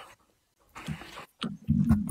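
A person's non-speech vocal sounds: a short breathy exhale about a second in, then near the end a low, throaty voiced sound.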